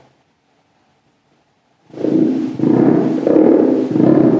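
Creality stepper motor turned by hand with pins 1 and 4 shorted together, starting about two seconds in with a loud rough buzz. The shorted pair is one of the motor's two coils, so the rotor now generates current and drags against turning.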